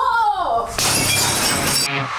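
Glass bottles shattering under a bat blow. The crash starts about three-quarters of a second in, lasts about a second and cuts off sharply.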